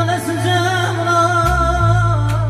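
Live music: a man singing through a microphone with a wavering vibrato, accompanied by an electronic keyboard holding a sustained bass note that shifts about one and a half seconds in.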